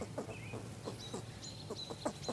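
Young fox squirrel giving a run of short, quick, clucking calls, about five a second.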